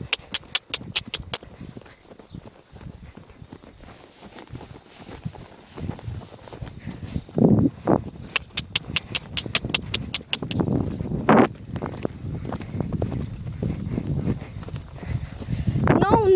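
A horse's hoofbeats and tack as it is ridden across grass, with runs of quick, even clicks, about six a second. A rumbling low noise builds in the second half, likely the horse moving faster and the handheld phone's microphone being jostled.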